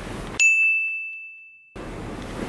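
A single bright bell-like ding, struck once about half a second in and ringing down over about a second. The room sound drops out completely beneath it and returns abruptly when it ends, the mark of a sound effect laid in during editing.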